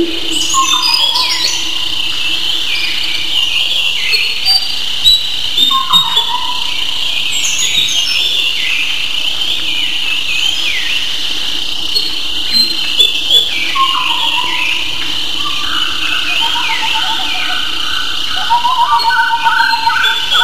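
Birds chirping and twittering together, with many short falling chirps and, near the end, a rapid trill.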